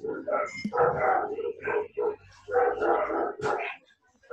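A dog barking repeatedly in short bursts, picked up through a video-call microphone.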